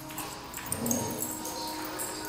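Dogs playing together, with a short dog vocalisation a little under a second in.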